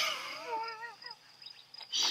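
A person laughing softly, trailing off about a second in, over the steady high tone of crickets.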